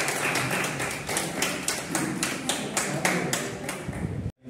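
A group of people clapping in unison in a steady rhythm, about four claps a second.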